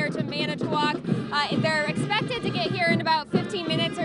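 Marching band playing outdoors, heard over the murmur of nearby voices.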